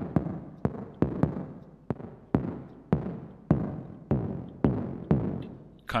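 A synthesized percussive hit from NI Massive, played over and over about twice a second. Each hit is a sharp attack with a falling pitch and a gritty, reverb-tailed decay. The decay length varies from hit to hit because key velocity controls the amp envelope's decay: harder key presses ring longer.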